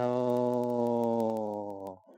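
A man's voice holding one low, steady note for about two seconds, sinking slightly in pitch toward the end: a long hum or drawn-out vowel rather than words.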